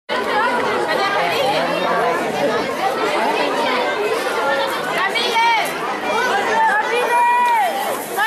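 Many overlapping voices chattering at once, mostly high-pitched children's voices, with a few louder calls standing out in the second half.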